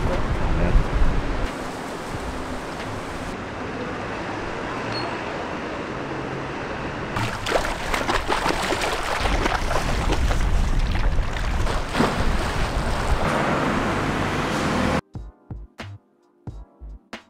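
Water washing and splashing against a rocky edge: a steady rushing noise, with sharper splashes in the second half. It gives way suddenly to music near the end.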